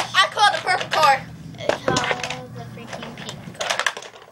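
Girls' voices, unworded and laughing, then a quick run of clicks and clatter from hard plastic toys being handled near the end.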